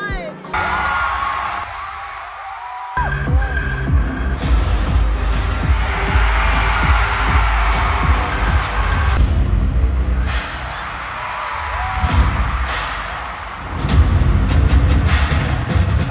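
Stadium crowd screaming as a live K-pop concert opens, then loud live pop music over the PA with a heavy bass beat coming in about three seconds in, the crowd screaming over it. The music eases for a few seconds and comes back hard near the end.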